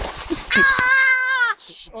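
A high-pitched, voice-like cry held for about a second, dropping in pitch as it ends, after brief murmured voices.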